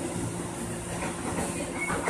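Running noise inside a moving electric commuter train car: the rumble of the wheels on the track under a steady low hum.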